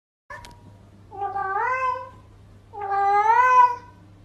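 A silver tabby cat meowing twice: two long, drawn-out meows, each rising in pitch toward its end. A brief click comes just before the first.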